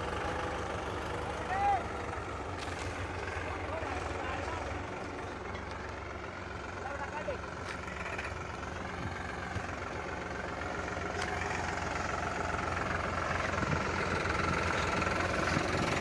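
Powertrac tractors' diesel engines running steadily under load while one tractor pulls the other on a chain. A short shout is heard about two seconds in.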